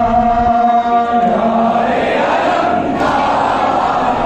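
Crowd of men chanting a mourning lament (noha) together, a held chanted line in the first second or so giving way to a looser mass of voices.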